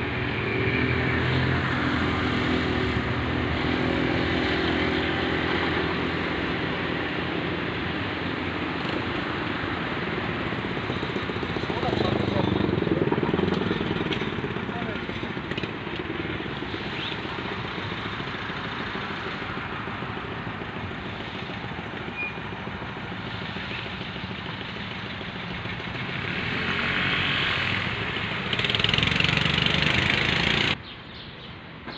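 Steady outdoor traffic noise, with a motor vehicle passing about twelve seconds in, its engine pitch sliding down as it goes by.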